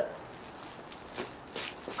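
Rubber bouncy ball burning on its own: faint crackling, with a few soft clicks in the second half.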